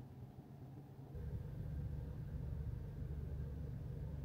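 Faint, steady low rumble of a parked car's cabin, stepping up a little about a second in.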